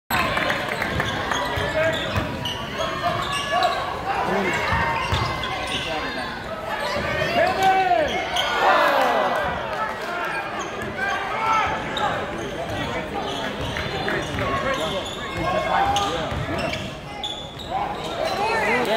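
Live basketball game echoing in a large gymnasium: a ball bouncing on the hardwood floor under the shouts and chatter of players and spectators.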